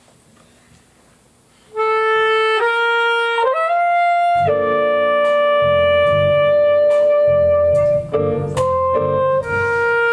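Quiet room for a couple of seconds, then a soprano saxophone begins a jazz melody of long held notes. About four seconds in, electric bass and keyboard come in beneath it.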